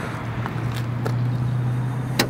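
Car trunk latch releasing on a remote command sent from a phone app: a few short clicks over a steady low hum.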